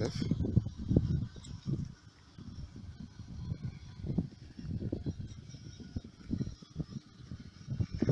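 Irregular low rumbling and bumping on a hand-held phone's microphone outdoors: wind buffeting and handling noise.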